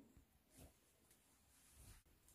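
Near silence, with two faint rustles of fabric being handled, about half a second in and again near the end.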